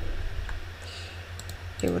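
A few clicks of a wireless Logitech computer mouse: one faint click about half a second in and several in quick succession near the end, over a steady low hum.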